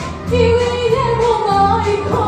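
A woman singing a Balkan folk song, accompanied live by accordions, electric bass and drums; her voice carries a gliding, ornamented melody over held bass notes.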